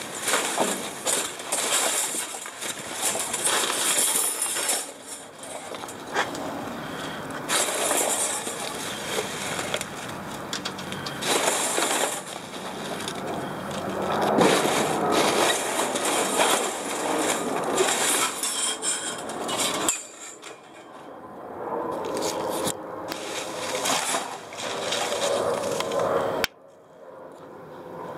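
Gloved hands rummaging through dumpster trash: plastic sheeting, paper and styrofoam packing rustling and crackling in irregular bursts as scrap wire is pulled out of the pile.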